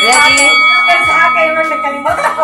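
A bell-like chime sounds suddenly and rings on with a steady, slowly fading tone, over loud excited voices.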